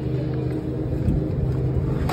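Steady mechanical hum with a low drone from a refrigerated drinks cooler's compressor and fans, right at the open cooler door.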